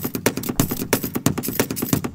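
A rapid, irregular run of sharp clicks and knocks, several a second, with no let-up.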